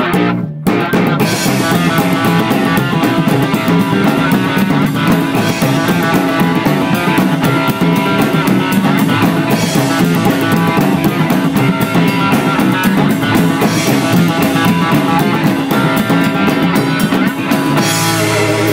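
Psychobilly band playing an instrumental passage on hollow-body electric guitar, upright double bass and drum kit. The music cuts out briefly about half a second in, then runs on steadily.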